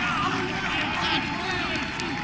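Many people talking at once, indistinct voices overlapping into a steady chatter with no single clear speaker.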